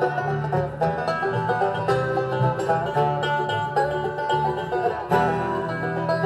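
Acoustic bluegrass band playing an instrumental break with no singing: fast picked mandolin and banjo-style lines over an upright bass, with a new phrase starting about five seconds in.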